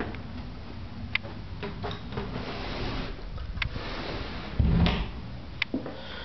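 A few sharp light clicks and one dull low thump about five seconds in, over a steady low hiss: handling and footstep noise from a handheld camera carried through a room.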